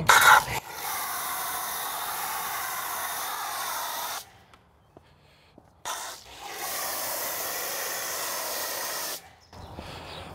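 Pressure-washer foam cannon spraying foamed wheel cleaner onto the wheels: a steady hiss for about three and a half seconds, a pause of under two seconds, then a second spray of about three seconds.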